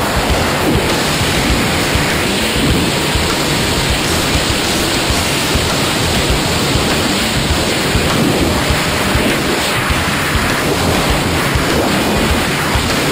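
Freefall wind buffeting a small action camera's microphone: a loud, steady rush of noise with a fluttering low end.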